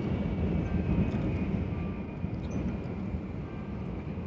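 Steady low rumble of a Shinkansen bullet train's passenger cabin while the train runs, with a faint steady high whine.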